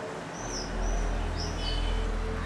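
A small bird chirping several times: short, high calls that dip in pitch. Under it a low, steady rumble swells up about half a second in.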